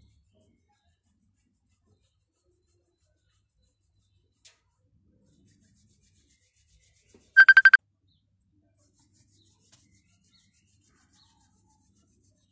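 Faint rubbing of hands over clothing at the chest and collarbones during a qi gong self-massage. About seven and a half seconds in comes a short, loud run of rapid high beeps on one steady pitch.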